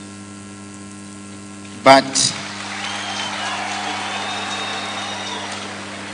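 Steady electrical hum from the public-address system. A single spoken word comes about two seconds in, followed by about three seconds of a large crowd's noise.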